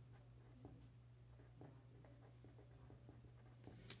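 Faint scratching of a pen writing a word on a sheet of paper, in a quick run of short strokes, over a low steady hum.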